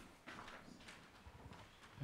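Near silence: room tone with a few faint knocks and rustles.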